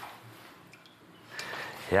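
Quiet room tone with a faint, even hiss, and a brief soft rustle shortly before a voice starts to speak at the very end.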